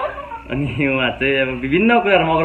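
A man's voice with drawn-out, rising and falling pitch, in a sing-song or whining tone rather than clear words.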